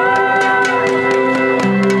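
Live pop-rock band playing the opening of a song: electric guitar and sustained tones over an even ticking beat, with a low note coming in near the end.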